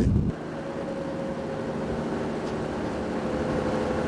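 Steady background hum of several faint held low tones over an even noise. A brief low rumble at the start cuts off abruptly a fraction of a second in.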